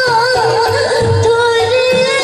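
Bhawaiya folk song: a singer holds one long, wavering note over low drum beats.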